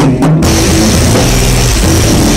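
Rock band playing live in a small rehearsal room: electric bass and guitar with a drum kit, the cymbals crashing in about half a second in and the whole band playing loudly from there.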